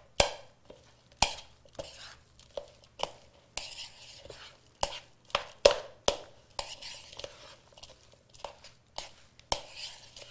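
A spoon stirring and mashing a thick, damp mixture of carrot pulp and ground seeds in a bowl. It gives irregular scrapes and knocks against the bowl, about one or two a second.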